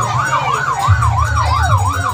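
An electronic siren warbling rapidly up and down, about three sweeps a second, over a steady low bass from a loud sound system.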